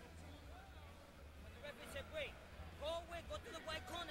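Indistinct voices talking, too faint for words, over a low steady hum; the talk grows busier in the second half.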